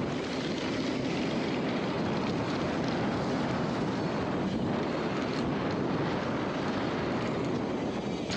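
Steady rushing noise of a mountain bike descending a dirt trail at speed: wind on the camera's microphone mixed with knobby tyres rolling over hard-packed dirt.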